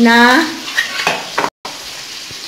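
Fish frying in hot oil in a pan: a steady sizzle, with a few sharp clicks of steel bowls being handled about a second in. The sound drops out for a moment just past the middle.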